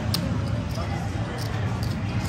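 Casino chips and playing cards handled on a felt table: a few sharp clicks, at the start and twice near the end, over a steady low background hum.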